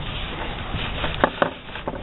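Hands handling and flexing a piece of leather: soft rustling with a few brief scrapes and taps around the middle.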